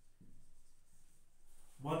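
Marker pen writing a word on a whiteboard: a faint, irregular scratching of the felt tip across the board. A man's voice starts near the end.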